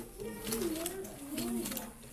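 A high, wordless voice wavering and gliding up and down in pitch, with a few faint clicks.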